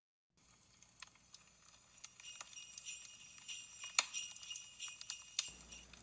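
Faint jingling of small bells, with many small metallic clicks and high ringing, starting after a moment of silence, building up after about two seconds and stopping just before the end.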